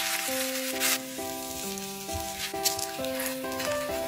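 Beaten egg sizzling as it is poured over shredded potato frying in a nonstick pan, a steady hiss with brief louder flares, under background music.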